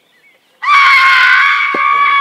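A woman's long, loud scream at a steady high pitch, starting suddenly about half a second in and held: an acted scream of shock at finding a man dead.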